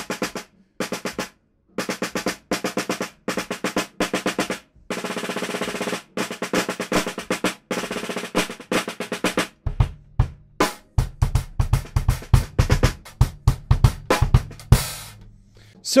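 Snare drum played with wooden sticks in short bursts of quick, compact strokes that do not let the stick rebound fully, with a brief roll about five seconds in. From about ten seconds in the strokes come more singly and in quick runs, with a deeper low end under them.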